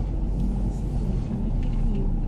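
Car cabin noise while driving: a steady low rumble of engine and tyres heard from inside the car.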